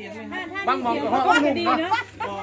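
Speech: people talking in Thai.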